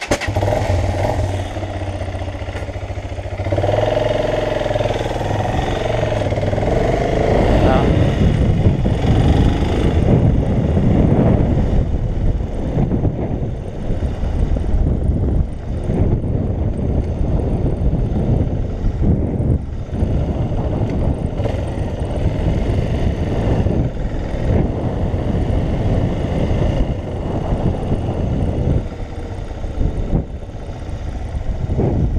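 Motorcycle engine running: a steady low idle for the first few seconds after a sudden start, then the bike pulls away with the engine note rising and falling as it rides along a street. Wind noise on the microphone grows as it gathers speed.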